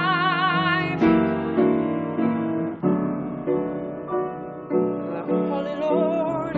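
A woman's held sung note, wavering with a wide vibrato, ends about a second in; an upright piano then plays on alone, with chords struck about twice a second.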